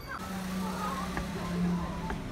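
A car coming along the street with its engine a steady hum over road noise, with faint voices in the background.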